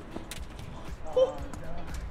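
Low outdoor background noise with a few faint ticks, and a short burst of a person's voice about a second in.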